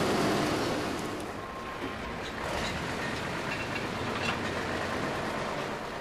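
Heavy waste-processing machinery running steadily, with shredded refuse spilling off a discharge conveyor onto a heap; the noise drops a little after about a second and then holds even.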